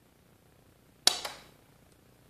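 Pulse arc jewelry welder firing once on a 16 gauge wire ring: a single sharp snap of the arc from the tungsten electrode about a second in, with a brief hiss that trails off.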